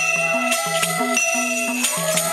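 Newa bansuri (bamboo flute) ensemble playing a folk melody in long held notes. A rope-laced barrel drum keeps a low two-note beat, and bright metallic strikes land about twice a second.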